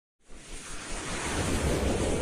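A swelling whoosh sound effect: rushing noise over a low rumble that starts from silence just after the start and keeps building in loudness, as an animated logo intro opens.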